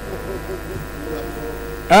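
Steady electrical buzz from the microphone and sound system, with faint, indistinct speech underneath.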